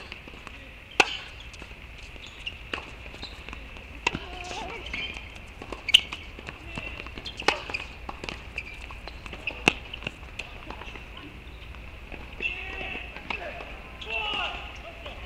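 Tennis rally on a hard court: a racket strikes the ball five times, sharp pops about one and a half to three seconds apart. A steady high-pitched hum runs underneath.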